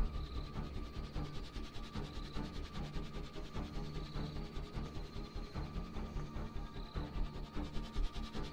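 Suspenseful background film score with a fast, even ticking pulse and short high notes that recur every couple of seconds.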